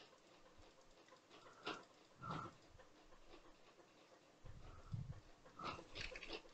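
Near silence: room tone with a few faint, short, soft sounds scattered through it.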